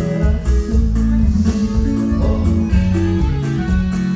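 Live norteño band playing an instrumental passage, loud, with electric bass and drum kit under plucked guitar strings.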